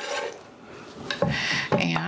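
Kitchen knife working English cucumber on a wooden cutting board: a short scrape at the start and a longer scrape past the middle as the pieces are cut and gathered. A brief voice sound comes near the end.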